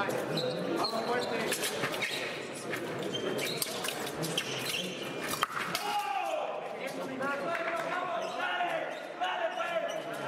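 Voices echoing in a large sports hall, with frequent sharp knocks and clicks scattered throughout.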